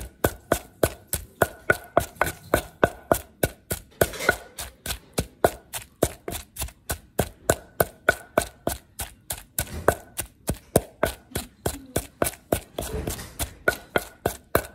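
Wooden pestle pounding ingredients in a wooden mortar: a steady rhythm of sharp wood-on-wood knocks, about four a second.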